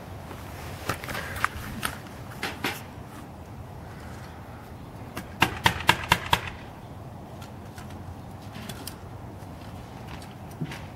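Sharp knocks or taps: a few scattered ones in the first three seconds, then a quick run of about six in one second near the middle, over steady outdoor background noise.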